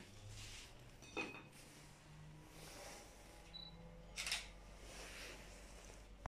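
Quiet room tone with faint handling noise from the recording phone: a soft knock about a second in and a brief rustle just after four seconds.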